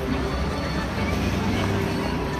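Busy city crossing ambience: music playing over crowd voices and traffic, with a truck passing close by.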